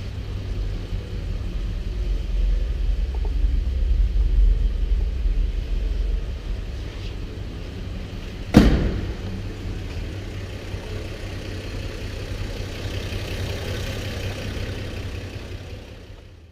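1955 Chevrolet 3100's straight-six engine idling with a steady low rumble that swells a few seconds in. A single sharp knock about eight and a half seconds in is the loudest sound.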